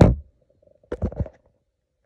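A few dull knocks and bumps of handling: a loud one right at the start and a quick cluster of three or four about a second in, then nothing.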